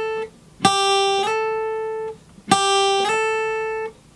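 Steel-string acoustic guitar playing a legato slide twice on the top E string: the 3rd-fret note is picked, then slid quickly up to the 5th fret without being picked again, so the pitch steps up a whole tone cleanly with no in-between notes heard. Each note rings on and fades before the next pick.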